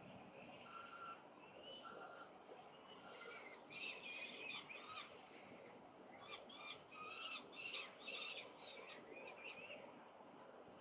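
Peregrine falcons calling at the nest ledge while one is fed: a run of short, repeated, pitched calls, thickest about four seconds in and again from about six and a half to nine and a half seconds. These are the food-begging calls of young being fed.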